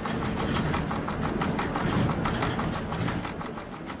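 Water-driven millstones grinding wheat. The wooden feed shoe, shaken by the iron damsel on the stone spindle, gives a rapid, even clatter over a steady low rumble of the running stones.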